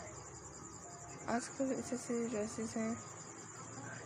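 A steady, high-pitched, rapidly pulsing trill runs throughout. About a second in, a person's voice speaks briefly for under two seconds, louder than the trill.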